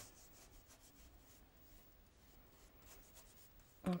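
Faint, repeated strokes of a paintbrush laying a watercolour wash onto paper.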